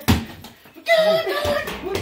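A single sharp smack of a punch landing on a freestanding punching bag right at the start, followed by a raised voice shouting through the second half.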